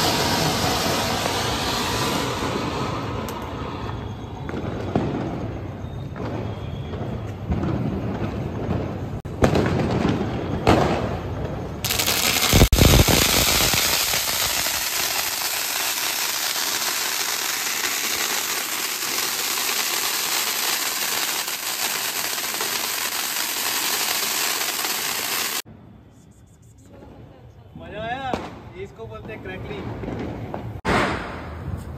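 Ground fountain fireworks (anar) spraying sparks. Crackling and scattered pops in the first dozen seconds, a single loud bang about 13 seconds in, then a long, even, loud hiss that stops abruptly a few seconds before the end.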